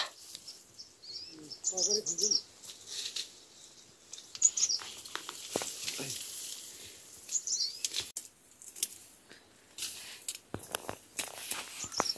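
Thin bamboo stalks rustling and knocking together, with scattered snaps and cracks, as someone pushes through a bamboo thicket and handles the stalks. A bird chirps briefly a few times in short high calls.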